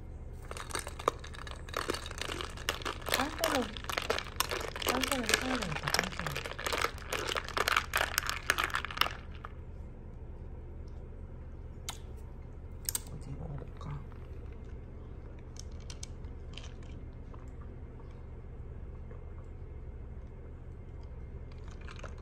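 An iced latte with whipped cream being stirred in a glass measuring cup: a dense run of rattling and clinking against the glass lasting about nine seconds, then only a few scattered clicks.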